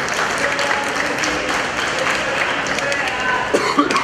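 Audience clapping and cheering, a dense crowd noise with voices mixed in.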